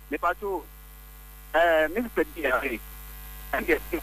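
A person speaking in short phrases, with a steady low mains hum underneath that carries on through the pauses.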